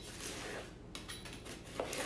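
Knife blade sliding down through the slots of a plastic salad cutting bowl, chopping the salad vegetables inside. It makes a quiet scraping with a few light clicks.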